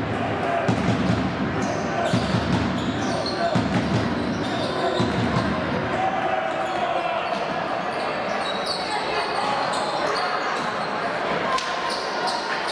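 Live court sound of a basketball game in an echoing sports hall: the ball bouncing on the wooden floor, shoes squeaking, and players' and spectators' voices calling out.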